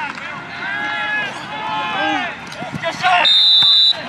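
People shouting during a football play, then a referee's whistle blows one steady, high-pitched blast of under a second near the end. The whistle is the loudest sound here.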